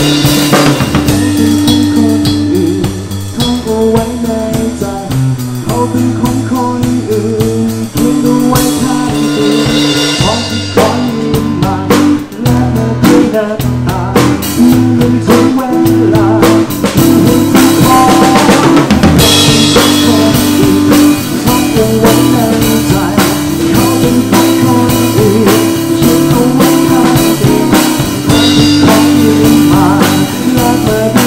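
Live band playing a rock song: a drum kit driving the beat with snare, rimshots, bass drum and cymbal crashes over acoustic guitar and held low chord notes, with bigger cymbal washes about nine and nineteen seconds in.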